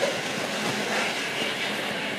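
Steady din of a busy covered fish market: many people talking at once with clatter from the stalls, no single voice standing out.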